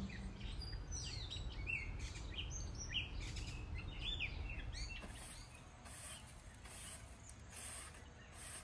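Birds chirping in quick, short calls over a low background rumble for about the first five seconds. After that the chirps stop and a faint, high hissing comes and goes about once or twice a second.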